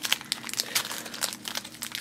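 Small clear plastic baggie crinkling and crackling irregularly as fingers work it open around a small toy figure.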